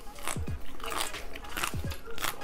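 Close-miked crunching as raw cucumber is bitten and chewed, several crisp crunches in quick succession.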